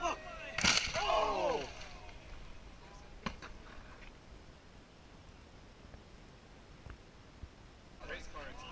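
A loud, sharp crash as a downhill mountain bike and its rider slam into the dirt, followed straight away by a person crying out with a falling voice. A fainter knock comes about three seconds in, then only low outdoor background.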